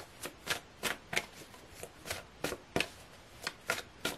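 A deck of oracle cards being shuffled by hand: a run of short card snaps at irregular spacing, about three a second.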